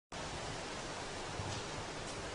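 Steady outdoor background noise: an even hiss with an uneven low rumble underneath.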